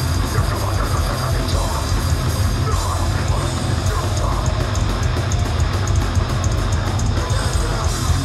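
Hardcore punk band playing live at full volume: distorted electric guitar and bass over a fast drum kit, with a steady run of cymbal hits through the second half.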